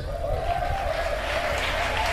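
Audience applauding and cheering, a steady wash of clapping and voices between the preacher's phrases.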